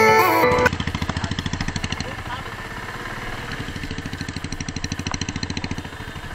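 A single-cylinder motorcycle engine, Royal Enfield type, running at low speed with an even, rapid thump of about ten beats a second.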